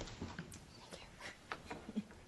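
Faint scattered clicks and knocks of people getting up from their chairs and moving about, a few irregular taps spread through the moment.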